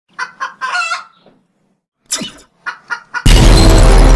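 Two bursts of short clucking calls like a hen's cackle, a few quick notes and then a longer one, with a pause between the bursts. Loud music cuts in suddenly a little after three seconds and is the loudest sound.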